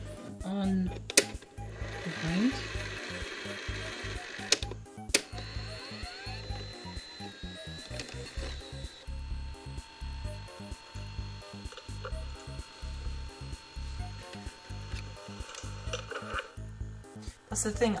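JVC HR-C3 VHS-C recorder's buttons clicking and its tape mechanism whirring as it is operated, with several sharp clicks in the first five seconds. Background music with a steady low beat plays throughout.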